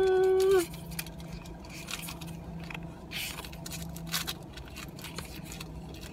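Pokémon trading cards being flipped and slid through by hand: a run of light clicks and soft rustles over a low steady hum. A held, sung 'ta-da' ends just after the start.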